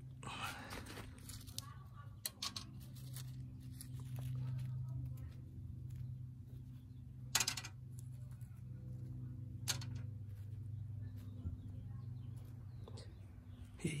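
Duck chow being sprinkled by hand around a wire cage trap: scattered light ticks and two sharp clicks about halfway through, over a steady low hum.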